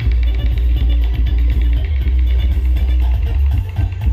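Dance music played at very high volume through a giant truck-mounted horeg sound system, a massive stack of subwoofers and horn cabinets. Deep sub-bass dominates, surging in at the start and holding steady under the rest of the music.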